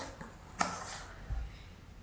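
A small cardboard reed-diffuser box being handled: a single short click a little over half a second in and a soft low thump near the middle, against a quiet room.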